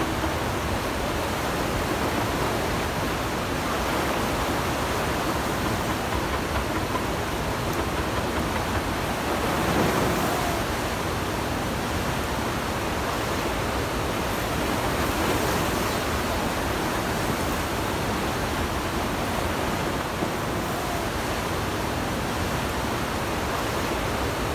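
Steady rushing of a fast river, an even wash of noise that swells slightly about ten seconds in.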